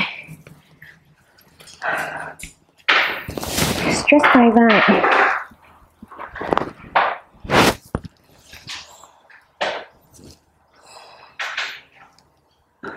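A woman's breathing while she stretches after a set of exercises: a string of short, breathy exhales at irregular intervals, with a brief voiced sound about four seconds in.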